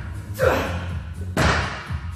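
A barbell loaded with 270 kg of plates thudding and clanking against the power rack during rack pull reps. Two heavy impacts come about a second apart.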